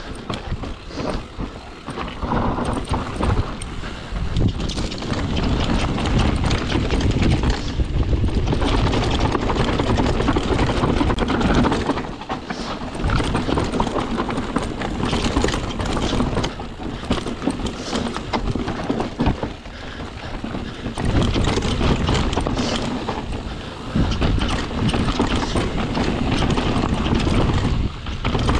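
Mountain bike descending fast on steep, dry, rough singletrack: a continuous clatter of tyres over dirt, rocks and roots, with a steady low rumble and irregular knocks from the bike rattling over the bumps.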